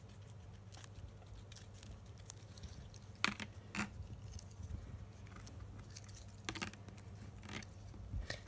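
Guinea pigs nibbling and chewing a soft fruit treat: faint small crunching and ticking sounds, with a few sharper clicks scattered through.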